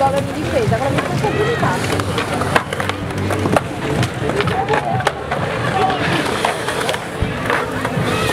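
Skateboards rolling and clacking on concrete over the constant chatter of a crowd of onlookers. A few sharp board clacks stand out, in the middle and near the end.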